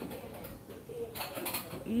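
Faint background with a short, low bird call a little past the middle.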